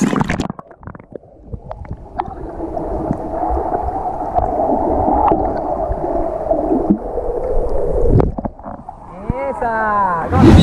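A splash as a swimmer goes into seawater, then the muffled rushing of water heard with the microphone submerged. About eight seconds in there is another splash as it comes back up, and a voice starts near the end.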